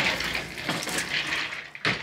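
Adidas River Plate football jersey rustling as it is handled close to the microphone, an uneven rustle that fades near the end, followed by a short sharp sound.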